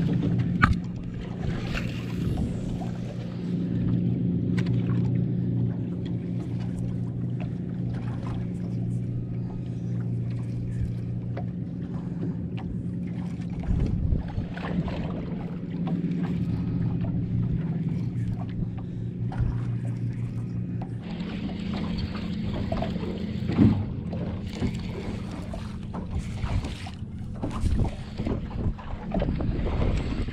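A boat motor running with a steady low hum; its pitch shifts about two-thirds of the way through. Light knocks and handling noises come and go over it.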